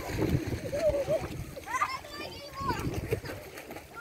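Soft background chatter of people at the water's edge, with light splashing of shallow water.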